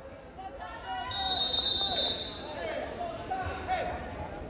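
A referee's whistle blows one steady, shrill blast lasting about a second, amid spectators' shouting.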